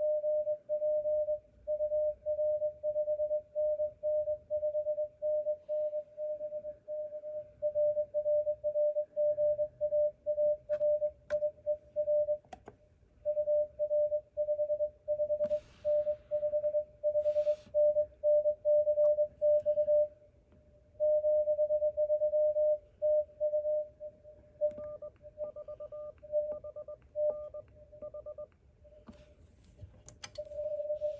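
Morse code (CW) from an HF transceiver: a single steady tone keyed on and off in dots and dashes, with brief pauses between groups. Near the end the keying is fainter, and a second, higher tone is faintly keyed with it.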